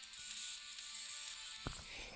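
Music playing through the Sony VAIO P11Z's very tinny built-in laptop speakers, thin and high with no bass. The MP3 in Rhythmbox is playing back faster than it should, which the owner puts down to the file being encoded above 128 kbps.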